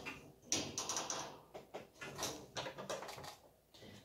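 Nylon zip tie being pulled tight around a black steel wire-grid rack: a run of small ratcheting clicks about half a second in, then scattered clicks and taps of plastic against the wire.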